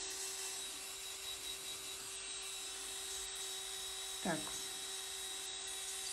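Electric manicure drill running at a steady speed, a fine bit working around the cuticle of a fingernail; a steady, even whine.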